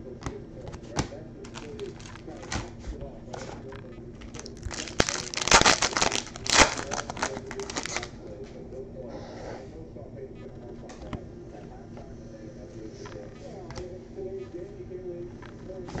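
Foil trading-card pack wrapper crinkling and tearing open, loudest in a burst of rustling about five to eight seconds in, among light clicks and taps of cards being handled.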